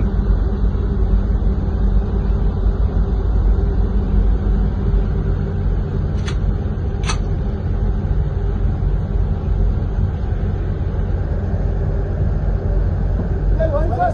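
Steady low rumble of a container ship underway, its engine hum mixed with wind and rushing water on the phone's microphone. Two brief sharp sounds break in about six and seven seconds in.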